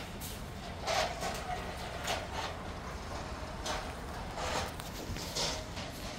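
Outdoor background noise: a steady low rumble with about five or six soft knocks and scuffs spread through it.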